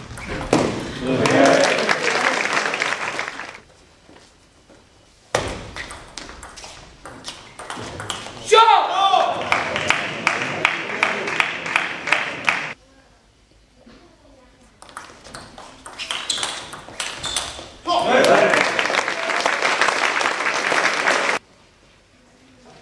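Spectators in a sports hall clapping and cheering in three bursts between table tennis points, with one loud shout in the long middle burst. In the quieter gaps, the table tennis ball clicks sharply off bats and table.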